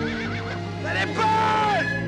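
A horse whinnying over a soft, steady film-score drone: a wavering high call at the start, then a louder call about a second in that rises, holds and drops away.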